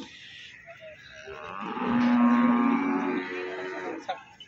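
A water buffalo lowing: one long, steady call that swells in about a second in and fades just before the end.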